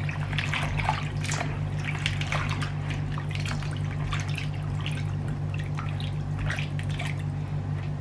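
A hand swishing thin slices of young ginger around in salt water in a plastic bowl: irregular small splashes and drips. A steady low hum runs underneath.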